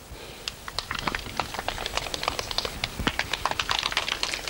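A small group of people clapping: scattered, uneven hand claps that start faint and thicken about a second in.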